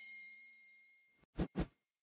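A bright notification ding that rings out and fades away over about a second, followed by two quick clicks close together, like a mouse double-click.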